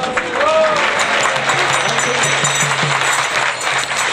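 Audience applauding, with a brief voice calling out near the start.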